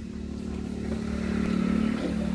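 A vehicle engine running with a steady, even hum, slowly getting louder.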